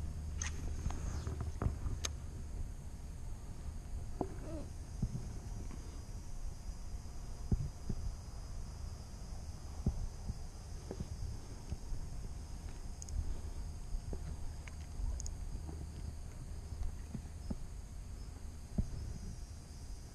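Quiet ambience aboard a plastic fishing kayak: a low steady rumble with scattered soft knocks and taps of the rod and gear against the hull.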